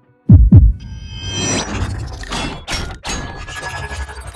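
Sound design for an animated logo reveal: two deep booming thumps in quick succession, like a heartbeat, each dropping in pitch, then a swelling whoosh with high ringing tones and a couple of sharp hits.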